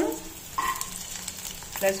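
Green chillies frying in olive oil in a stainless steel frying pan: a steady sizzle.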